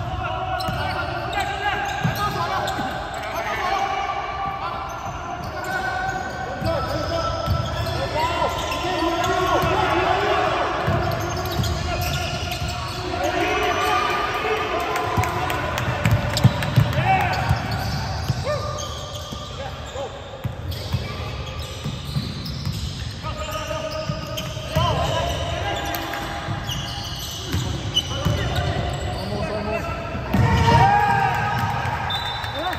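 Basketball being dribbled on a hardwood gym floor during a game, with repeated thumps, under players' voices calling out. The sound echoes in a large hall.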